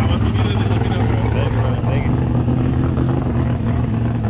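Toyota Supra's big-single-turbo 2JZ inline-six idling steadily, with faint voices in the background.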